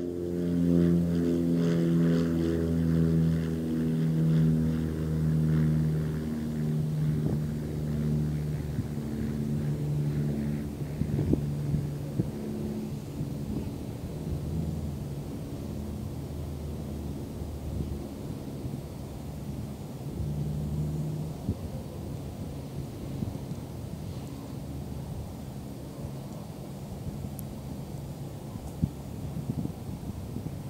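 A distant engine's low, steady drone that is loudest at the start and fades gradually over about twenty seconds, with wind on the microphone.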